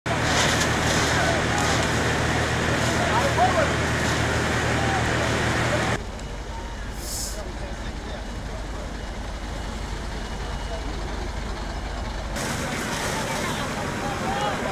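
Fire-scene sound: a fire truck's engine running steadily with people's voices over it. About six seconds in, after a cut, it drops to a quieter low engine hum, and near the end a louder hiss returns with voices.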